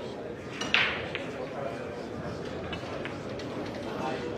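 A single sharp clack of pool balls striking each other about a second in, with fainter clicks just before and after it, over the murmur of a crowd in a large hall.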